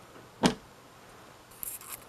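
Adhesive bond cracking as a glued LCD panel is prised up out of a TV frame: one sharp snap about half a second in, then a brief run of small crackles near the end.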